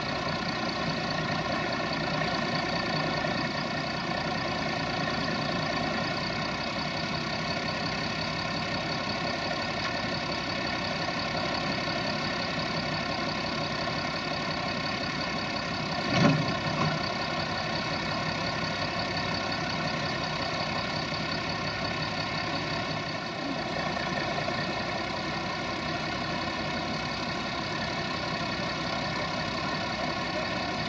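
Minneapolis-Moline tractor engine running steadily while belt-driving a Ransomes threshing machine, the engine and the thresher's machinery making one continuous mechanical hum. A single loud thump stands out about halfway through.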